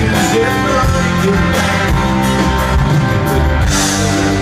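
Live country band playing loud and steady, with guitars strummed over the full band.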